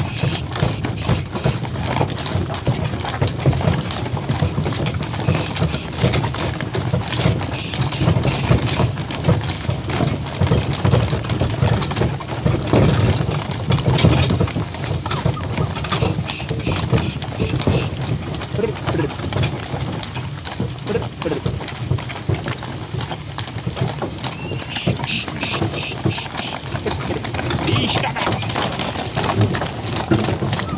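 Hooves of a pair of harnessed stallions clip-clopping on a gravel road as they pull a cart, over the steady rumble of the cart's wheels.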